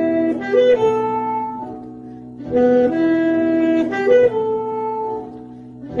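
A solo wind instrument playing a slow melody of long held notes over a soft sustained accompaniment, in phrases that swell and fall away about every three seconds.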